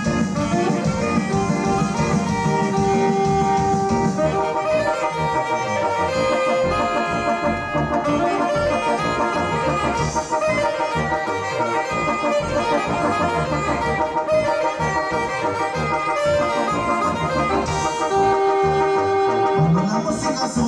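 Live dance band playing an instrumental break between sung verses of a Latin dance song: held melody lines over a steady, pulsing dance beat.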